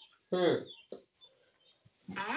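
A person's voice: one short vocal sound with a falling pitch about a third of a second in, followed by a brief blip, then quiet.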